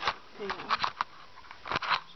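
Handling noise: a few short rustles and light knocks, around a brief spoken word.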